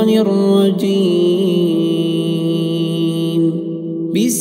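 A man's voice reciting the Quran in a drawn-out melodic chant, holding long notes and sliding between a few pitches. It breaks off about half a second before the end.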